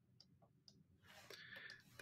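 Near silence with two faint, short clicks about a quarter and three-quarters of a second in, and a faint rustle near the end.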